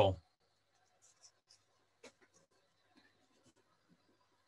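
A man's spoken word ends at the start, then near silence: room tone with a few faint, scattered ticks.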